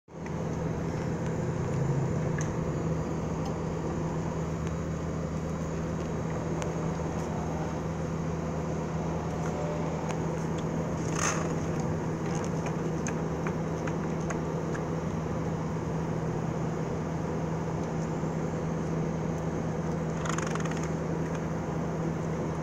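A steady low hum throughout, with two short hisses of steam from a Rowenta steam iron, one about halfway through and one near the end.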